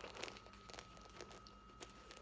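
Faint rustling and a few soft clicks of a leather wallet being handled and slipped into a studded leather pouch, the loudest rustle in the first half second.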